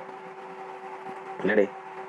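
A pause in a man's speech: a steady faint electrical hum and hiss, with one short spoken word about one and a half seconds in.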